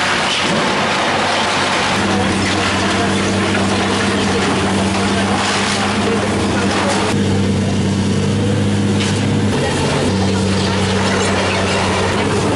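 Caterpillar demolition excavator's diesel engine running with a steady drone. Over it there is a broad hiss of demolition noise, which thins for a few seconds in the second half.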